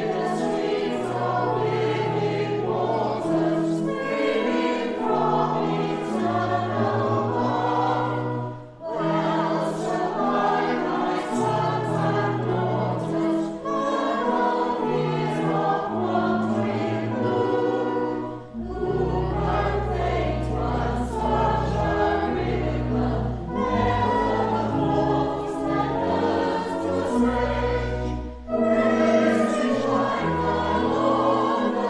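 Church choir singing in parts, in phrases of about ten seconds with brief breaks between them. Deep, sustained bass notes join a little past halfway.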